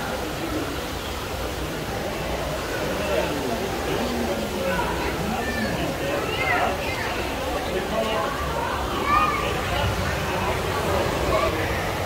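Indistinct voices talking over a steady rushing background noise.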